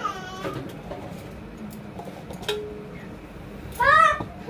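A young child's high-pitched squeals. One falls away just at the start and a louder rising one comes near the end, with a short click about halfway between.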